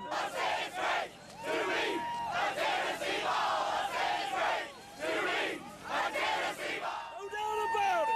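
A crowd of football fans shouting and cheering in celebration of a win, many voices yelling over each other, with a long held yell rising out of it about a second and a half in and again near the end.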